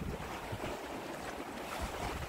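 Small sea waves washing and splashing against a rocky shore, with wind rumbling on the microphone.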